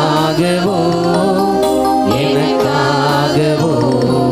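A slow devotional hymn sung by one voice over sustained accompaniment, played through loudspeakers, with long held notes that glide between pitches.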